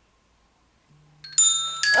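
A low buzz starts about a second in, then a loud electronic chime of steady notes sounds, shifting to a second note shortly before the end.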